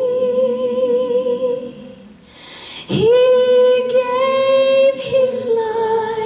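A woman singing long held notes through a microphone. She breaks off about two seconds in, comes back with an upward scoop into a long note, then steps down to a lower note near the end.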